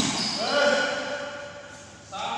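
A badminton racket strikes the shuttlecock with a sharp crack right at the start, followed at once by a drawn-out shout that rises and then fades over about a second.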